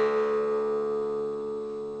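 Plucked zither music: a single note, struck just before, rings out with its overtones and slowly fades.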